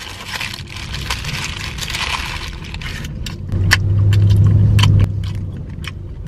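Paper burger wrapper crinkling and rustling as it is pulled open, for about three seconds. Then come wet chewing clicks and a low hummed "mmm" held for about a second and a half.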